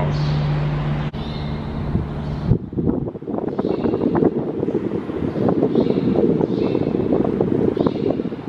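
A steady low hum for the first two and a half seconds, then an abrupt change to wind buffeting the microphone, a rough low rumble that flutters unevenly.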